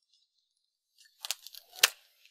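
Pruning shears snipping a ripe dragon fruit off its cactus stem: a few short crunching snips starting a little over a second in, the last one the loudest.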